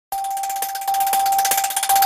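Electronic news-channel logo sting: a single steady, bell-like held tone with rapid glittering ticks layered over it, building toward the logo reveal.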